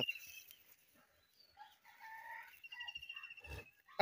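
Faint bird calls in the background: a few soft mid-pitched calls about two seconds in, then a thin, high, wavering note lasting about a second.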